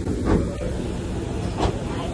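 Steady low machine rumble of an airport jet bridge, with two sharp knocks about a third of a second and a second and a half in, as people step along its metal floor.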